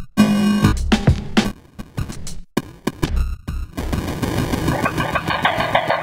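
Trip-hop drum loop played through Logic Pro's insert effects, which are switched on and off from a MIDI keyboard so that the beat is chopped into glitchy stutters. The beat cuts in and out in the first half, and from about four seconds in it becomes a fast, buzzy stuttering repeat.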